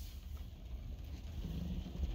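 Faint, steady low rumble inside a car's cabin, in a pause between words.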